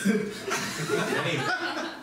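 Audience laughing and chuckling at a joke, dying down about a second and a half in.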